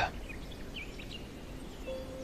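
Quiet outdoor ambience with a few faint, short bird chirps in the first second. Soft, held music notes come in near the end.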